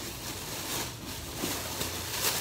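Rustling and handling noise as fabric items are picked up and moved about.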